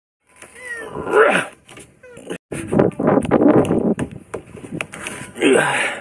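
A man's wordless grunts and exclamations of effort while climbing a metal playground frame: one about a second in and another near the end. In between there is a dense stretch of scraping and knocking as hands and shoes work along the metal bars.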